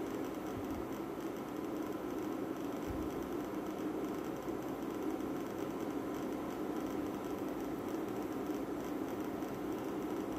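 Saucepan of water heating on an induction cooktop at just under 80 °C, short of the boil: a steady rumble and hiss of bubbles forming and collapsing on the pan's base, over a faint steady hum.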